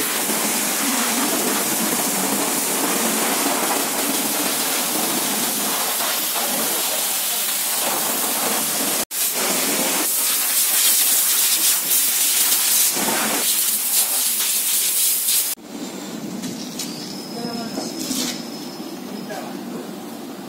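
Steady hiss of a water jet from a washing hose spraying down a motorcycle, broken off sharply about nine seconds in and again a few seconds later. In the last few seconds the spray is gone and it is much quieter.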